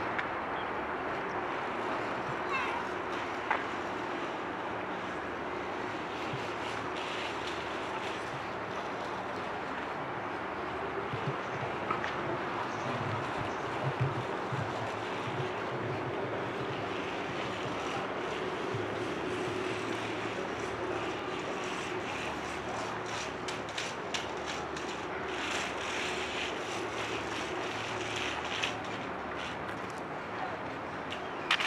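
Steady outdoor city background noise: a constant low hum of distant traffic and machinery with a faint drone held underneath. A few light ticks and clicks, more of them near the end.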